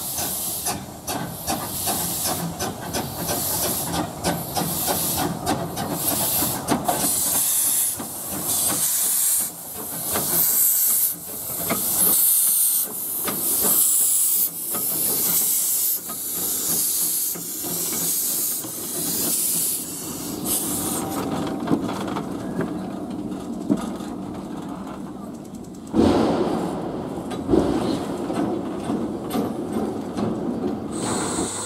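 Small narrow-gauge steam tank locomotives hissing steam: a run of loud hissing bursts a second or so apart, then a lower, steadier rumble for the last third with a sudden loud thump near the end.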